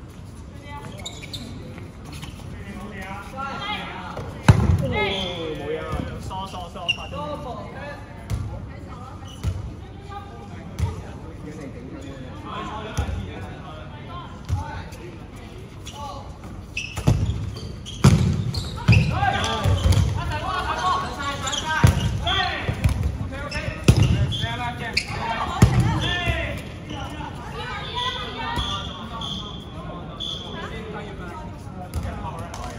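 Dodgeballs being thrown in a dodgeball game, a scattered series of sharp thuds and slaps as they hit the floor and players, coming thicker in the second half, with players shouting over them.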